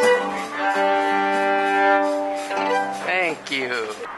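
Violin played at close range: long held notes, several sounding together, bowed smoothly, with the pitch sliding up and down near the end.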